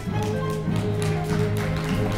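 Orchestra playing sustained low notes, with repeated footsteps and thumps from performers running across the wooden stage floor.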